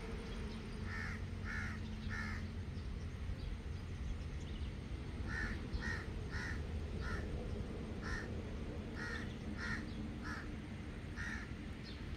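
A bird giving short repeated calls: three in quick succession about a second in, then a run of about ten more from about five seconds on, over steady low background noise.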